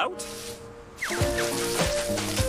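A soft rustle of leaves, then playful cartoon music comes in about a second in, with quick swoops falling steeply in pitch.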